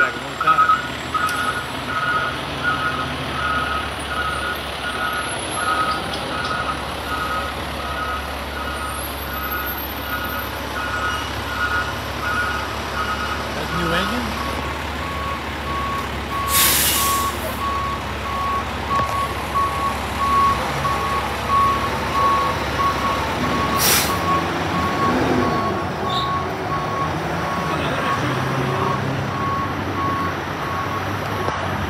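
Fire apparatus backup alarms beeping as heavy diesel fire trucks reverse, over the low rumble of their idling engines. A two-tone alarm beeps about twice a second for the first half, then gives way to a lower single-tone beep. Two sharp air-brake hisses come in the second half.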